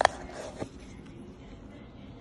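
Handling noise from a diamond-set Audemars Piguet watch as it is lifted out of its presentation box: a sharp click right at the start and a second, softer one about half a second later, over a steady low hum.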